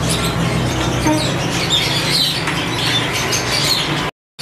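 Many caged birds chirping and squawking over one another, short high calls scattered throughout, over a steady low hum.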